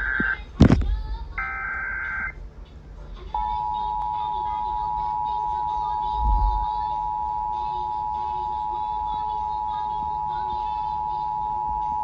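Emergency Alert System required monthly test playing through a Sangean radio's speaker: the last two bursts of the SAME header's digital data tones, about a second each, then a sharp click, then the two-tone EAS attention signal, a steady pair of close tones held for about nine seconds before cutting off near the end.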